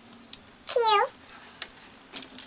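A single short, high meow, its pitch dropping at the end, with faint clicks of foam letters being handled on the table.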